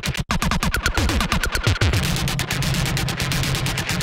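Heavily effect-processed 808 bass being auditioned: a fast glitchy stutter with several falling pitch sweeps in the first half, settling into a steady low tone about halfway through.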